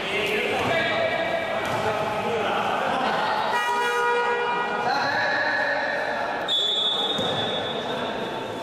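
Indoor basketball game: a ball bouncing on the court amid voices of players and spectators echoing in the hall. A few held high-pitched tones stand out from about halfway through.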